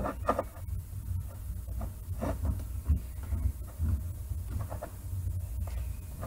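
A low, steady hum with a few faint clicks.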